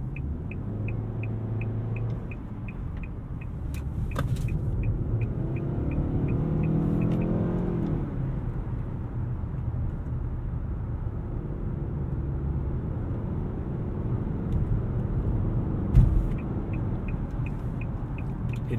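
In-cabin sound of a 2024 Nissan Altima's 2.5-litre four-cylinder with CVT on the move: a steady engine and road rumble, with the engine note rising under acceleration about six seconds in and dropping back about two seconds later. A rapid, regular ticking, typical of the turn-signal indicator, runs for the first seven seconds and again near the end, and there is a single thump about sixteen seconds in.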